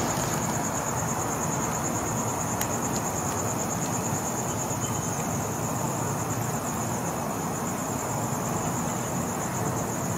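Crickets trilling steadily at a high pitch, over a constant low rumbling background noise.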